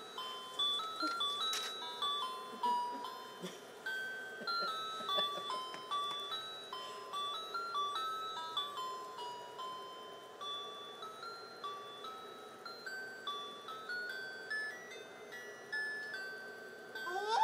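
Small electronic music chip playing a simple Christmas-type melody one note at a time, about three notes a second, steady throughout.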